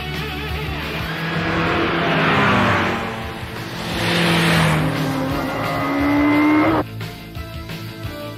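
Motorcycle engines sweep past twice in loud rushes. A rising engine note follows and cuts off suddenly near the end, all over rock music.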